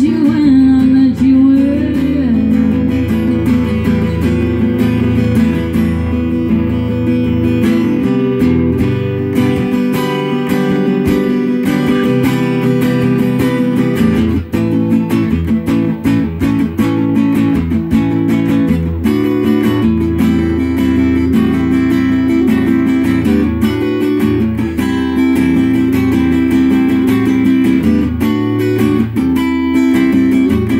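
Acoustic guitar strummed steadily through an instrumental passage of a song.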